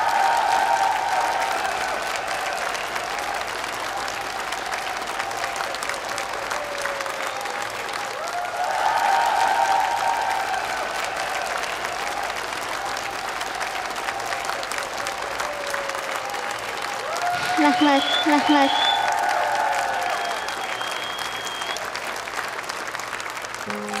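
Audience applauding steadily, with slow background music playing over the applause.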